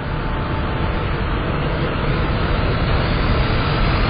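A dense rumbling noise that swells steadily louder, a trailer's build-up sound effect, stopping abruptly just after the end.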